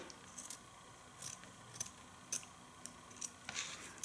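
Scissors cutting through felt: about five quiet, crisp snips, spaced roughly half a second to a second apart.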